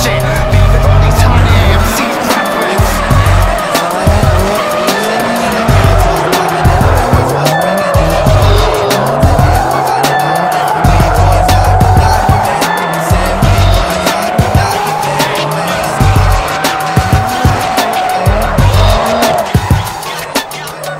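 Drift cars sliding with wavering tyre squeal and engine noise, under a music track with a heavy bass beat.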